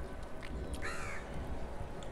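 A bird's single short call about a second in, rising then falling in pitch, over soft sounds of fingers mixing rice with curry.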